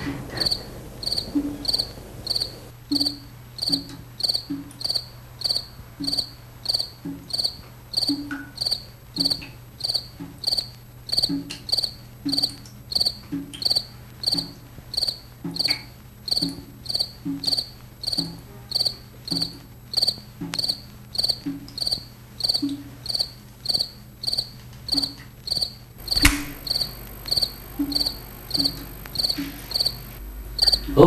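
Crickets chirping in a steady, even rhythm of about two high-pitched chirps a second.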